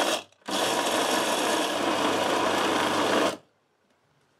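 Tefal electric mini chopper running in two pulses, chopping fried pancetta cubes with dried tomatoes, chili and garlic: a short pulse ending just after the start, then a steady run of about three seconds that stops suddenly.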